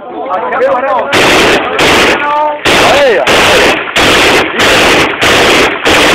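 Rifles fired into the air in long bursts of rapid automatic fire, starting about a second in. The shots are so loud that they distort into near-continuous blasts broken by short pauses. Men shout over the firing.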